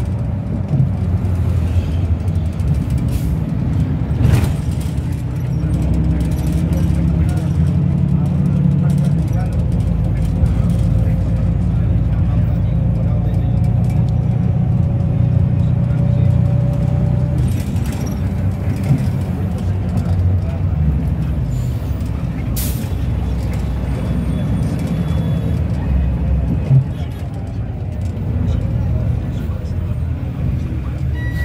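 Engine and road rumble inside a Lima Metropolitano bus as it drives, with occasional knocks and rattles, growing quieter in the last few seconds as the bus pulls into a station.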